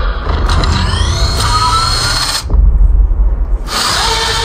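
Film trailer soundtrack: music and sound effects with rising mechanical whines, then a deep low rumble with the treble dropped out for about a second past the halfway point. The full music returns near the end.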